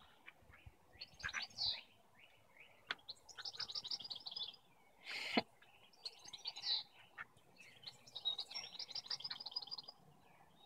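Small songbirds chirping and singing, with two quick trilled phrases, one before the middle and one near the end. A short burst of noise comes a little past halfway.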